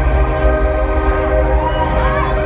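Live band's instrumental passage between vocal lines: a sustained keyboard chord of several steady notes held over a heavy, steady bass.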